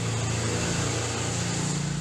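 A motor vehicle's engine running steadily: a low hum over a hiss of noise.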